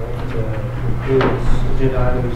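Indistinct, off-microphone talk in a meeting room over a steady low electrical hum, with one brief knock or clatter a little over a second in.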